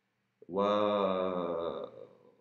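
A man's drawn-out hesitation sound, a long "wa…" held at one pitch for about a second and a half, starting about half a second in.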